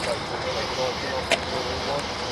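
SEPTA Silverliner IV electric commuter train approaching, a steady wash of train noise, with faint voices in the background and one sharp click about 1.3 s in.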